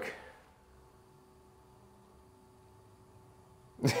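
Near silence with a faint steady hum, ended by a man's short laugh.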